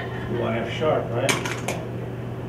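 Marker tapping and clicking against a whiteboard, a quick run of sharp clicks in the second half, over a steady low room hum.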